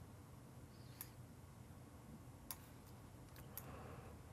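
A handful of faint computer mouse clicks, irregularly spaced, over near-silent room tone.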